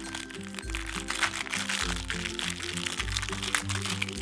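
Foil wrapper of an LOL Surprise accessory crinkling and crackling as it is peeled open by hand, over background music with a steady bass line.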